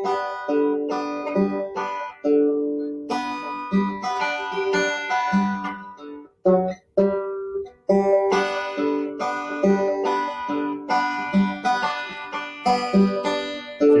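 Banjo played solo: a tune of plucked notes and chords, with a couple of brief breaks near the middle.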